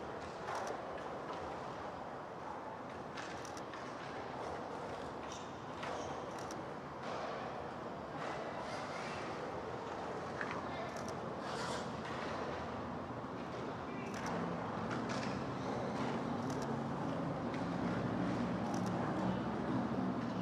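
Steady background traffic noise, with a low engine hum that comes up about two-thirds of the way through and a few faint clicks.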